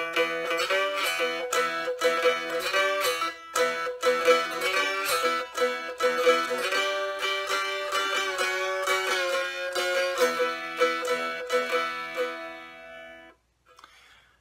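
Cigar box guitar played bottleneck style with a thick-walled glass slide cut from a cobalt blue wine bottle: picked notes with glides between pitches, in the less bright tone that thick glass gives. The playing stops about a second before the end.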